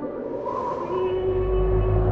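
Eerie horror-trailer sound design: a long, steady drone tone sets in about a second in, over a deep rumble that builds underneath it.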